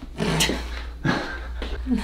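A person laughing breathily in three short bursts, just after a neck adjustment.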